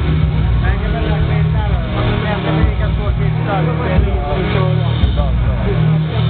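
Detroit electro played loud over a club sound system, with a heavy pulsing bass line that drops out briefly a couple of times in the second half. Voices are mixed in above the music.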